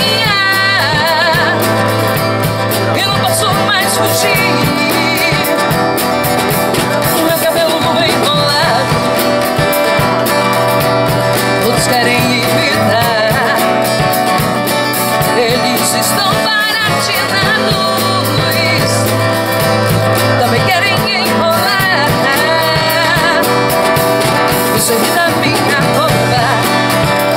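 A woman singing a song live, accompanied by strummed acoustic guitar and a drum kit.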